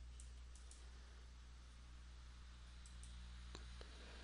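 Faint computer mouse clicks, a few scattered early on and two sharper ones near the end, over a low steady hum.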